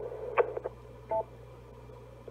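Anytone AT-778UV dual-band mobile radio's external speaker at the end of a repeater transmission: a short squelch click, then about a second in a brief two-tone beep, over faint hiss and low hum.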